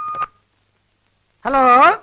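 Electronic ring of a landline telephone, a melody of steady beeps stepping up and down in pitch, cut off with a click just after the start as the handset is lifted.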